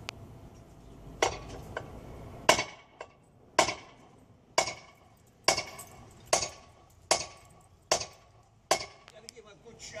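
Repeated hard metal-on-metal blows, about ten of them roughly a second apart, each with a short ring: a long steel bar being driven down onto a Ford Model A rear-end part held on jack stands, to knock a stuck, oiled piece loose.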